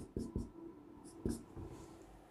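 Marker pen writing on a whiteboard: a few short strokes in two quick groups, as letters are drawn.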